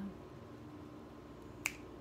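A single sharp finger snap about one and a half seconds in, over quiet room tone.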